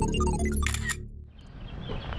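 End of an electronic logo jingle, a quick run of melody notes, closing about half a second in with a camera-shutter sound effect. It fades to faint outdoor background noise.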